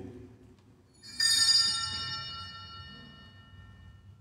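Altar bells rung once at the elevation of the host after the words of consecration: a bright cluster of high ringing tones starts about a second in and fades away over about three seconds.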